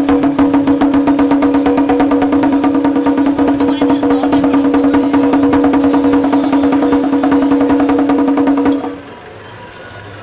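Fast, even strokes on a Chinese barrel drum over one steady held note, stopping abruptly near the end.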